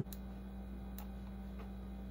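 Steady low electrical hum, with two faint clicks about a second in and about a second and a half in.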